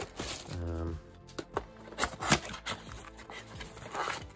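Trading cards and a small cardboard box being handled on a playmat: a scatter of sharp taps and clicks, with a brief sound of the voice about half a second in.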